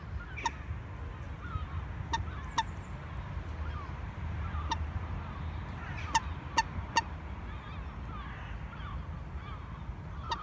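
Common moorhen giving short, sharp calls, about seven of them, with a quick run of three about six seconds in, over faint chatter of other birds and a low steady rumble.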